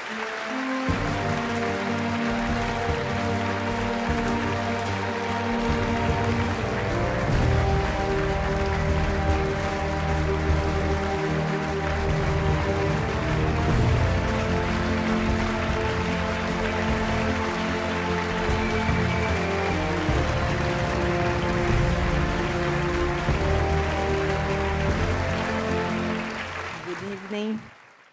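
Background music with held chords over a steady bass line, starting about a second in.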